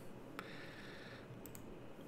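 Near-quiet room tone with one faint, sharp click about half a second in and a couple of lighter ticks a second later, likely from a computer mouse or keyboard at the desk.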